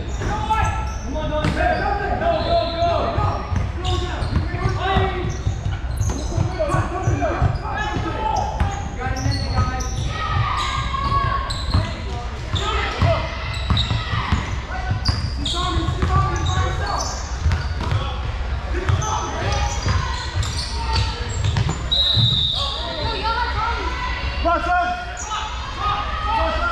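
Basketball being dribbled on a hardwood gym floor, with scattered shouts and chatter from players and spectators, echoing in a large hall.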